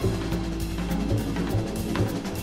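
Jazz band instrumental passage: a drum kit plays a steady pattern of bass-drum and snare strokes over a low bass line, with no voice.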